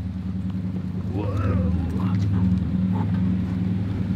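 Ford Raptor's 6.2-litre V8 idling steadily through its stock exhaust with a resonator-delete pipe.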